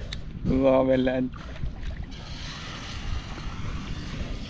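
A man's voice holds one drawn-out syllable for under a second near the start. Under it runs a low wind rumble on the microphone, then a steady hiss from about halfway on.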